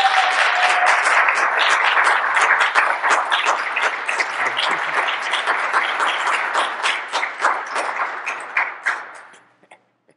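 Congregation applauding: a steady round of clapping that thins to a few scattered claps and dies away near the end.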